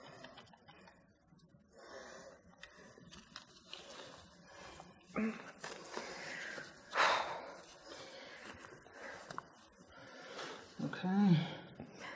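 Cloth rustling and handling noises as a trouser leg is opened to expose an injured lower leg: several soft, scratchy bursts, the loudest about seven seconds in. A short vocal sound comes near the end.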